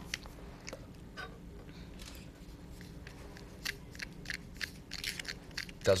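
Iron filings shaken from a jar into a glass petri dish, then a palette knife stirring them into paint, making gritty scraping and clicking against the glass. The clicks are sparse at first and come thicker and louder from about halfway.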